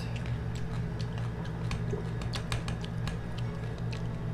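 Close-up eating sounds of crispy lechon belly: scattered sharp clicks and crunches from the crackling pork skin being picked off a foil-lined tray and chewed, with a few closely spaced clicks about halfway through, over a steady low hum.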